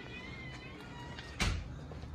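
A faint, thin, wavering high tone, then a single sharp knock about one and a half seconds in.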